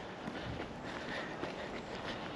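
Faint footsteps of a person walking on a wet tarmac path, over quiet outdoor background noise.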